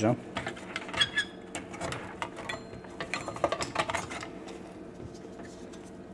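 Irregular clicks, knocks and scraping as a computer power supply's circuit board and wiring harness are worked out of its metal casing by hand, over a steady low hum.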